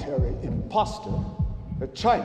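A voice speaking in a speech, over a low beat in the soundtrack music that repeats a few times a second, each stroke dropping in pitch.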